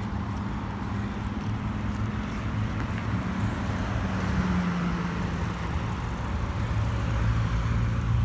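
Road traffic: cars driving past on a multi-lane road, a steady rush of tyres and engines that grows a little louder near the end.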